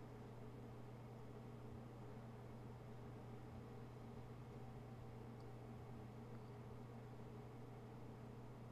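Near silence: room tone with a steady low hum and faint hiss.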